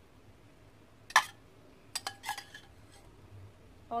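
A steel spoon knocking once against the cooking pan about a second in, then clinking against it a few times with a short metallic ring about two seconds in, as boiled eggs are spooned into the curry.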